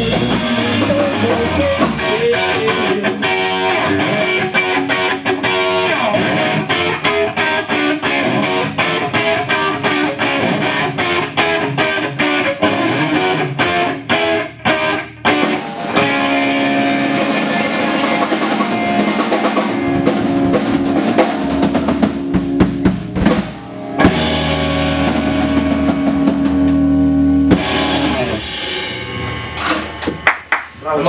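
Rock band playing live: electric guitar, bass guitar and drum kit driving a steady beat, with brief breaks about halfway through and again a little later. It ends on held ringing notes shortly before the music stops.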